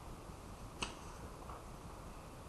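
A single sharp click about a second in, followed by a much fainter click, over low steady hiss.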